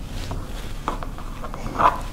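Soft rustling of cotton quilt fabric being unfolded and smoothed by hand on a cutting mat, with a couple of brief brushing sounds about a second in and near the end.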